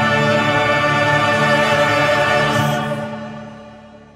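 A choir with instrumental backing holding the song's final chord, which fades away from about three seconds in.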